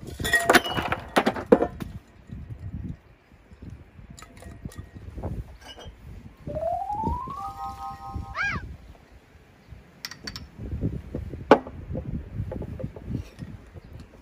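Ice cubes tipped from a metal bucket clatter and clink into a large balloon glass. Tonic water is then poured into the glass from two bottles; a rising whistle-like tone that levels off is heard around the middle, and there is a sharp knock near the end.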